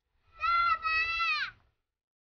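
A goat bleating once, a drawn-out two-part call lasting about a second that drops in pitch at the end.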